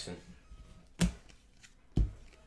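2017-18 Donruss basketball trading cards being flipped through and set down one by one on a stack by hand: two short sharp card clicks about a second apart.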